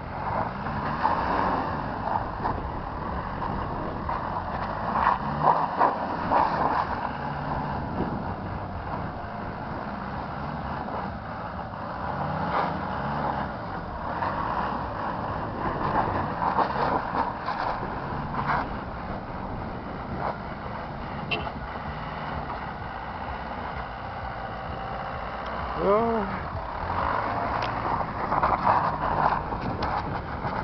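Isuzu Trooper engine revving up and falling back again and again as the 4x4 slides around on snow, with tyre and road noise.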